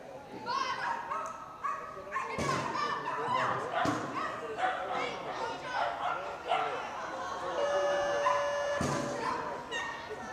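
Small dog barking and yipping in short bursts while running an agility course, mixed with people's voices and calls around the arena and a few sharp knocks.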